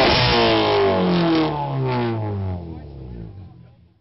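A car engine whose pitch falls steadily over about two seconds, then the sound fades out to almost nothing near the end.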